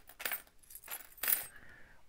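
Loose old foreign coins being shaken together: a few short bursts of bright metallic clinking.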